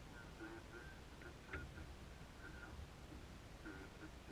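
Faint, indistinct voices in short snatches over a low steady rumble, with one short click about a second and a half in.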